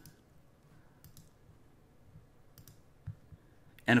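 A few faint, sharp computer mouse clicks spread over a few seconds, heard over quiet room tone.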